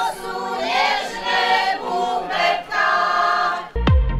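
A women's folk choir singing a sustained hymn-like melody in several voices. Near the end it is cut off by electronic music with a regular thumping beat.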